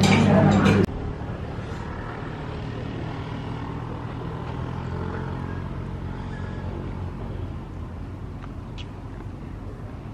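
About a second of loud restaurant chatter cuts off abruptly, giving way to a steady low outdoor hum with a few faint distant ticks.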